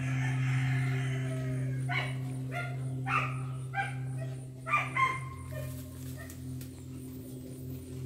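A dog barking, a string of short barks about half a second apart from about two to five seconds in, over a steady low hum.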